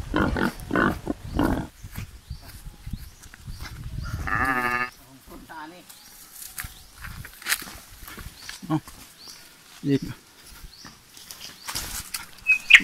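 Footsteps and rustling of people walking through grass and ferns on a forest trail. About four seconds in comes a single short, wavering animal-like call, and near the end two brief calls.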